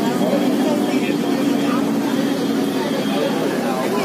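Steady drone of a bus engine and road noise heard inside the moving cabin, with passengers' voices chattering in the background.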